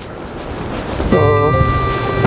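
Wind rushing on the microphone, then background music coming in about a second in: a held chord over a steady bass, with a bending melodic line on top.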